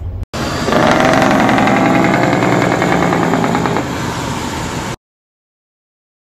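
A loud engine running with a fast rattling pulse, easing a little near the end. It starts and stops abruptly, about four and a half seconds long.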